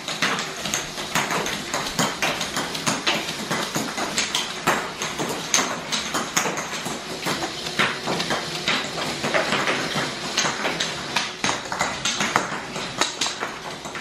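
Motorized Lego Technic machine catapult running and firing plastic baby-food caps: a dense, irregular stream of plastic clicks and rattles from its gears and rack-and-pinion mechanism, with small knocks as the machine jumps on the hardwood floor.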